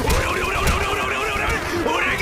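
Several men yelling and shouting in a brawl, with high, wavering cries over a low rumble.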